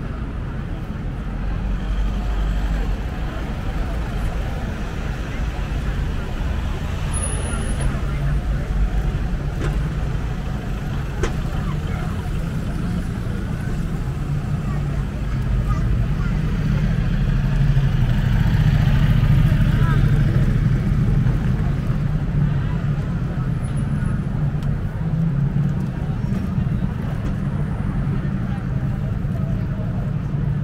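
Busy city street traffic: cars and black cabs passing and turning at a junction, a steady low engine and tyre rumble that grows louder past the middle as vehicles pass close, with the hubbub of pedestrians.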